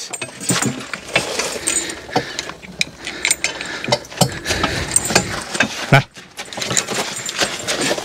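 Steel evener, whippletree and chain hitch hardware on a horse-drawn sled clinking and rattling as it is handled, with irregular sharp metallic clanks.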